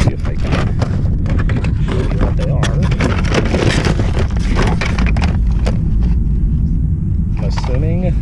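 Cardboard boxes, books and plastic toys being rummaged through and shifted in a car trunk: a run of clicks, knocks and paper-and-cardboard rustling, over a steady low rumble of wind on the microphone.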